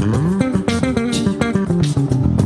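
Electric bass guitar playing a quick lick of short plucked notes with slides between some of them.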